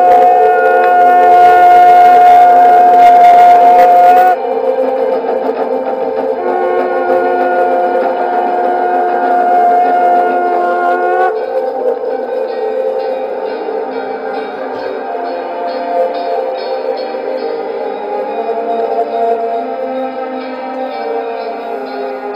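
Background music from a historical drama's score: sustained held notes, loudest for the first four seconds, with the chord changing about four and eleven seconds in. From about twelve seconds a light steady pulse joins the held tones.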